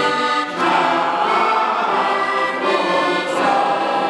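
A group of men singing a song together in unison, accompanied by a button accordion, with a brief break between phrases about half a second in.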